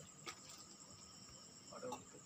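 Crickets chirring: a faint, steady high-pitched trill, with two light clicks and a brief bit of a voice near the end.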